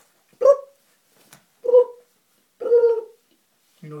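Small dog giving three short calls, the last one a little longer.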